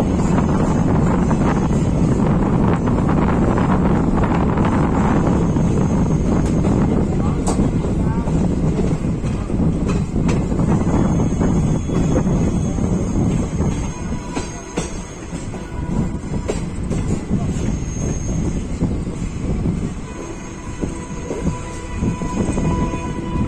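Passenger train coaches running over the track on a curve, heard from aboard the train: a dense rumble with clicks from the rails, getting quieter after about fourteen seconds. Thin high squeals of wheel flanges grinding on the curve come and go in the second half.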